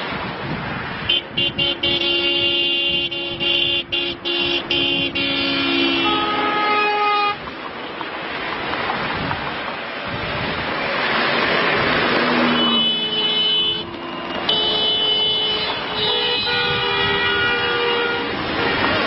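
Many vehicle horns honking at once, several steady notes of different pitch overlapping. The horns sound for about six seconds, give way to a rushing noise for about five, then start again near the end.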